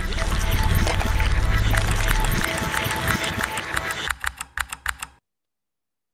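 Soundtrack of a played demo video: a dense noisy texture thick with rapid clicks, a few faint held tones and a low rumble that fades about halfway. It thins into separate clicks and cuts off suddenly about five seconds in.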